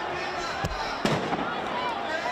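Two loud bangs about half a second apart, the second louder, over a crowd of protesters shouting amid police tear gas and water cannon.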